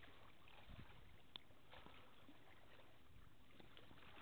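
Near silence: a faint, even outdoor background hiss, with one brief faint tick about a second and a half in.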